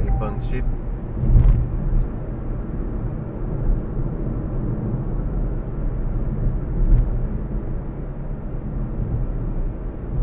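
Steady low road and engine rumble of a moving car, heard inside the cabin, with a few brief, faint voice fragments near the start.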